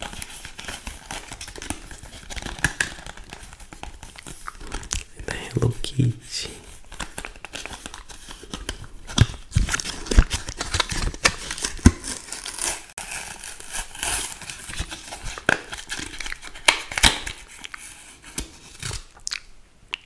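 A toothbrush's plastic blister pack crinkling and crackling as it is handled and torn open, with irregular sharp clicks and snaps throughout.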